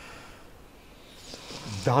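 A pause between speakers with faint room tone, then a soft hiss, and a man's voice starting just before the end.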